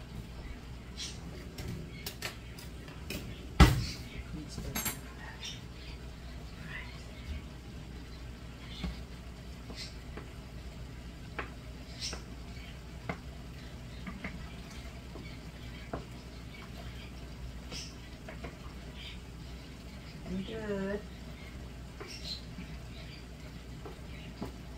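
Kitchen utensil and cookware noise: scattered light clicks and knocks of a wooden spoon and utensils against metal pots, with one loud sharp clank about four seconds in. Later, a wooden spoon stirs farfalle pasta in a pot.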